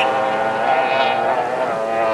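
Racing outboard engines of tunnel-hull powerboats running at speed on the water, a steady droning whine whose pitch wavers slightly about a second in.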